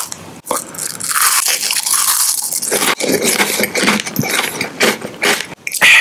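A Bourbon Elise chocolate-cream wafer stick being bitten while still in its foil-lined plastic wrapper. The wrapper crinkles and the wafer crunches in a dense, crackly run with brief breaks, about three seconds in and again near the end.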